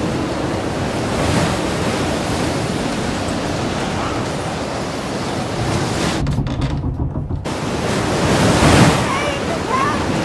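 Ocean waves and surf with wind, a steady rushing wash that goes briefly muffled about six seconds in and swells to its loudest near the end.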